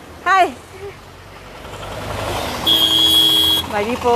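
Road traffic noise swelling as a vehicle approaches, then a vehicle horn sounding one steady note for about a second, the loudest sound here.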